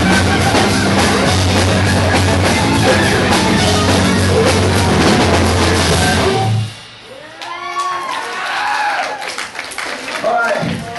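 Live rock band playing loudly, with drum kit, bass and guitar, cutting off suddenly about six and a half seconds in as the song ends. Shouts and cheers from the crowd follow.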